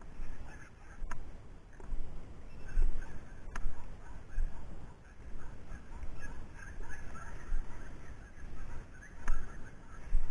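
Footsteps swishing through tall dry grass, about one step every three-quarters of a second, with a few sharp clicks.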